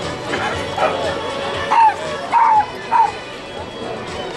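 A dog barking: three short, high barks in quick succession about two seconds in, over steady background music.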